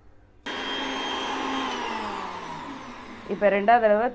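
Sujata mixer grinder grinding shredded coconut with water for coconut milk: it starts suddenly about half a second in, runs at full speed for about a second, then is switched off and winds down, its whine falling in pitch as it slows.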